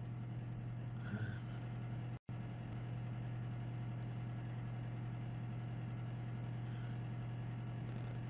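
Steady low hum of background noise picked up by a live-streaming microphone, with a faint short sound about a second in. The sound cuts out completely for a moment just after two seconds.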